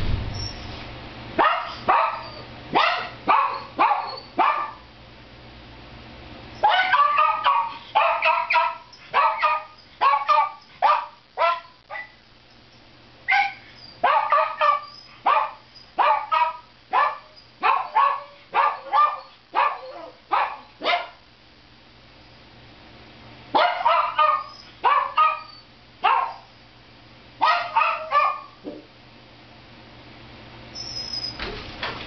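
A door thuds shut at the very start. A small dog left alone then barks again and again in sharp, high-pitched bursts of several barks, with brief pauses between bouts: it is distressed at being left alone behind the closed door.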